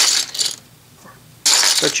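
Plastic Lego slope bricks clattering as they are sifted by hand and dropped into plastic bins. There is a burst of clatter at the start and another about one and a half seconds in.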